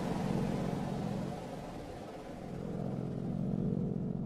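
Sound effect for a closing logo: a low, steady rumbling drone with hiss over it, dipping about halfway through and swelling again.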